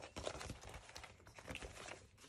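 Faint rustling and light ticks of glossy magazine paper being handled and laid on a sketchbook page.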